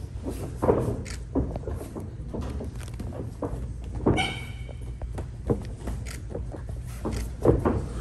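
Irregular thumps and scuffs of two grapplers' bare feet and bodies shifting on a padded vinyl mat, over a steady low hum of the hall. A brief high squeak about four seconds in.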